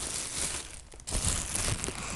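Thin plastic bag crinkling and rustling as it is handled and tugged out of a packed bag, with a short break just before a second in.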